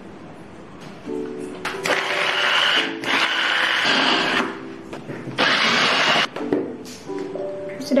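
Small push-top electric mini chopper (GSF) whirring in three short bursts, each about a second, as it blends shallots, garlic, ginger and lemongrass with oil into a smooth spice paste. Background music plays under it.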